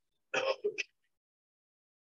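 A man briefly clears his throat, a short two-part burst lasting about half a second.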